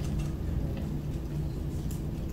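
Steady low room rumble with a faint hum and a few soft clicks.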